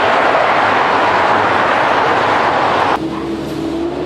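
Road traffic: a loud, steady rush of passing cars that cuts off abruptly about three seconds in, leaving a fainter steady hum.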